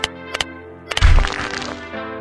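Logo-animation sound effects over music: a few sharp clicks, then about a second in a loud shattering crack with a deep boom that fades over most of a second.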